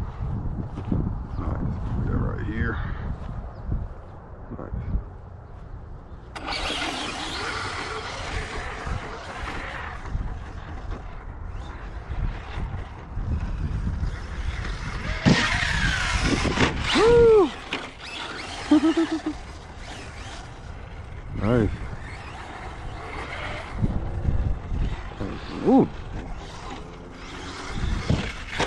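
Traxxas Slash 4x4 RC truck's electric motor whining in short bursts that rise and fall in pitch as it is throttled, with spells of hiss as it drives over grass.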